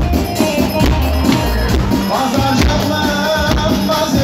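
Turkish folk dance music for a halay line dance: a steady drum beat under a wavering melody line.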